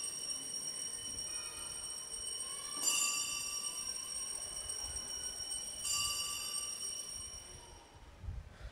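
Altar bells ringing at the elevation of the consecrated host. The clustered high ring is struck afresh about three seconds in and again about six seconds in, each peal ringing on until the next, and it fades near the end.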